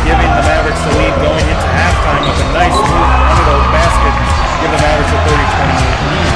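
Basketball being dribbled on a gym floor, bouncing about twice a second, over voices and music.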